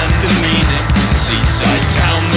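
Indie rock band playing an instrumental passage with no vocals: steady bass, a melodic guitar line, and drums with cymbal hits recurring several times a second.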